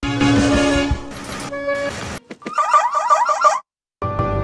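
Short snippets of car-advert soundtrack spliced together, each cut off suddenly: music with held notes, a couple of clicks, then a fast warbling tone that repeats several times a second and stops abruptly.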